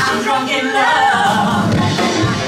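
Live band music with singing: voices singing over ukulele, saxophone and upright bass.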